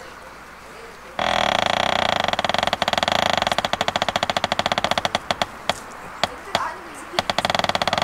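A bell rung rapidly: a bright metallic ringing that starts suddenly about a second in, with quick repeated strikes that thin out in the second half.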